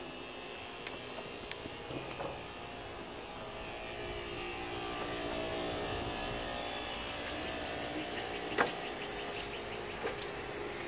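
A distant machine running: a hum of several steady tones that grows louder about halfway through, with a few light clicks and one sharp click near the end.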